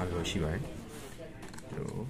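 A man's voice speaking in the first part, followed by a few faint clicks of plastic printer parts being handled as the pickup-roller shaft is taken out.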